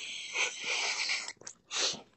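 A person's long breathy hiss of breath, then a shorter one near the end.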